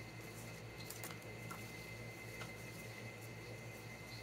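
Faint handling of paper banknotes and a card being slid into a binder's clear plastic pocket, a few soft rustles and light clicks over a steady low electrical hum.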